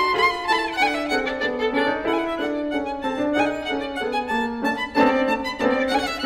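Violin and grand piano playing together live, the violin carrying a line of quick bowed notes over the piano, with a couple of sharp accented strokes about five seconds in.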